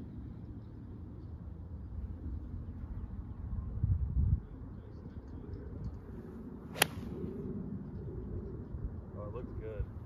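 Five iron striking a golf ball in a full swing off the fairway: one sharp click about seven seconds in. A short low rumble comes about four seconds in.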